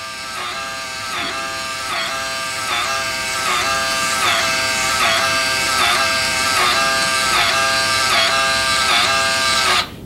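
Thermal printer built into a refrigerant analyzer printing a test-result slip: a steady motor whine with a pulse about every three-quarters of a second as the paper feeds, cutting off suddenly just before the end when printing finishes.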